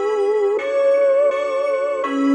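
Omnisphere synth melody playing back through RC-20 and Halftime: sustained organ-like notes with a slow warble in pitch from the RC-20 wobble and light distortion. The melody steps up to a higher held note about half a second in.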